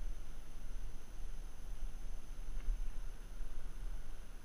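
Low, uneven rumble on the action camera's microphone, under a faint steady high whine, with no distinct sound from the fish fight.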